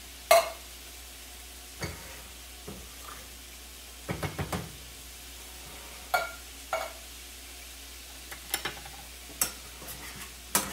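Metal kitchen clatter: a tin can knocked against the rim of a stainless steel saucepan as canned green beans are emptied in, and cookware handled on the stove. Separate sharp clinks with a short metallic ring, the loudest just after the start and a quick run of taps about four seconds in.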